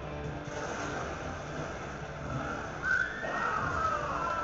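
Animated film trailer soundtrack heard through a hall's speakers: music, with a sudden loud high sliding cry about three seconds in.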